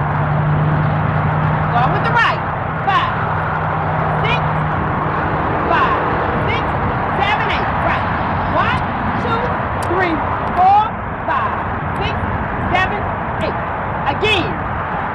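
Outdoor traffic noise with a steady low engine hum from a vehicle for the first five seconds or so, and short high chirps scattered throughout.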